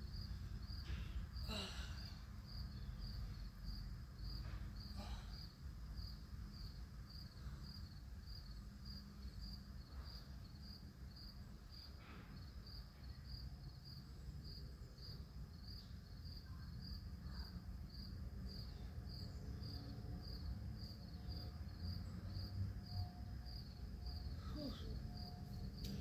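Crickets chirping in a steady rhythm, about two chirps a second, over a low outdoor rumble.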